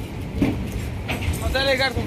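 Railway platform background: a steady low rumble, a short knock about half a second in, and a brief raised voice calling out near the end.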